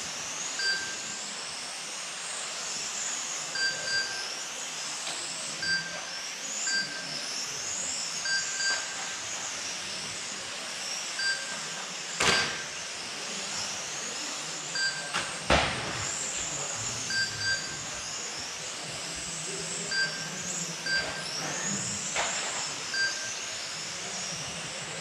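High whine of 1/12th-scale electric radio-controlled racing cars, rising and falling as they accelerate and brake around the track. Frequent short beeps from the lap-timing system run through it, and there are two sharp knocks a few seconds apart midway through.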